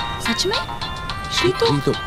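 Mobile phone ringtone playing a simple electronic melody in stepped tones, the sign of an incoming call. A voice is heard briefly near the end.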